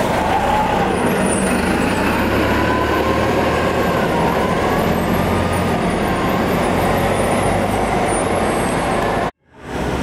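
City transit bus engines running as buses pass close by and pull away, over steady loud street traffic with a low engine hum. The sound drops out suddenly for a moment near the end.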